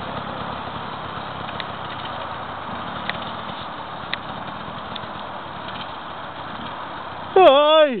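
Enduro dirt bike engine running steadily as the motorcycle rides away over rough ground, heard from a distance. A man shouts loudly near the end.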